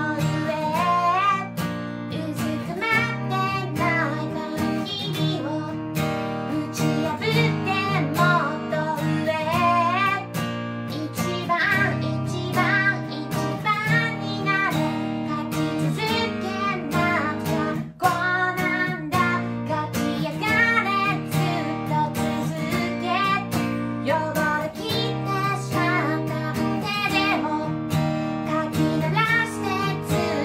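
A woman singing a pop melody in Japanese over a strummed steel-string acoustic guitar, with a short break in the playing about eighteen seconds in.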